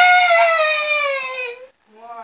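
A young child's voice: one long, high-pitched wail that rises and then slowly falls, followed near the end by a shorter vocal sound.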